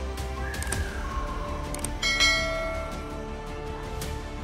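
Background music with a bell chime struck once about two seconds in, ringing out and fading: the notification-bell sound effect of a subscribe-button animation.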